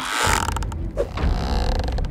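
Creaking sound effect of a rope pulled taut: a brief whoosh at the start, then a low rumble under rapid creaks and clicks.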